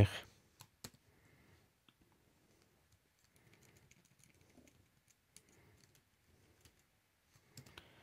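A few faint, scattered clicks of a computer keyboard and mouse, irregularly spaced, with a small cluster near the end.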